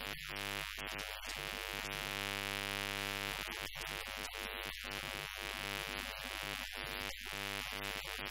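A steady buzzing hum with many evenly spaced overtones, unbroken except for brief dropouts, and no speech.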